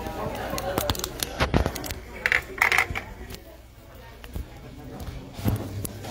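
Handling noise on the phone that is filming: a cluster of sharp clicks and knocks in the first couple of seconds and a few more later, over indistinct talk in the room.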